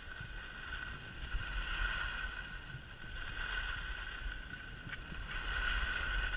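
Skis sliding over groomed snow, a steady hiss that swells and eases a few times, with wind rumbling on the microphone.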